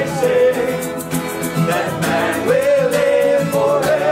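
Male voices singing together, holding long notes, over two strummed acoustic guitars with a steady strumming rhythm.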